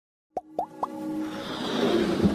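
Animated-logo intro sound effects: three quick rising plops about a quarter second apart, then a swelling whoosh over a held tone.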